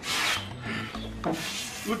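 Wooden armchair scraping and rubbing as a person sits down in it, loudest in a rasping scrape right at the start.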